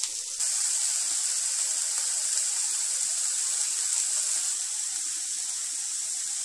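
Diced onions sizzling in butter on a hot flat griddle pan: a steady high hiss that picks up slightly just after the start.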